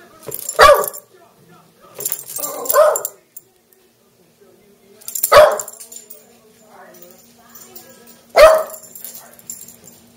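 Small shaggy dog barking: about five single loud barks, spaced a couple of seconds apart, two of them close together between two and three seconds in.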